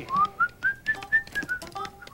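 Someone whistling a short tune of quick, clear notes, about four a second, climbing to a peak about a second in and then coming back down.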